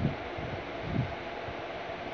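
Steady background hiss, like air-conditioning or recording noise, with a short low sound about a second in.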